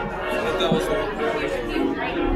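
Crowd chatter: many people in a waiting line talking at once, a steady mix of voices with no single one clear.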